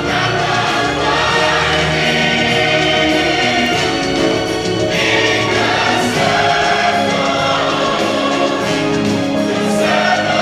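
Music with a choir singing, held notes and a steady full sound throughout.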